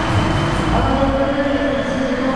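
Loud, steady rumbling din of an indoor arena with a seated crowd, heavy in the low end, with no clear voice or impact standing out.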